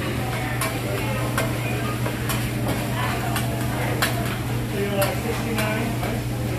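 Metal spatula clicking and scraping against a steel hibachi griddle as egg fried rice is chopped and turned, with the rice sizzling. The clicks come irregularly, about one or two a second, over a steady low hum.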